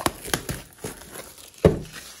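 Plastic wrap crinkling and crackling as it is pulled off a cardboard trading-card box, with a single solid thump near the end.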